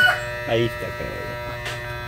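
Electric hair clipper running with a steady, even buzz.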